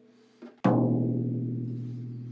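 Floor tom's bottom head struck once near a lug, then ringing on with a low, steady pitch that slowly fades. It is a tuning tap: the tuner reads 332 against a target of 379, so the head is too slack at that lug.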